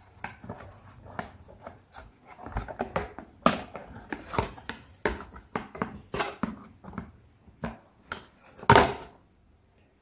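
Plastic-handled scissors snipping plastic ties on toy packaging, with cardboard and plastic being handled: a run of irregular clicks and crackles, with a louder clatter near the end.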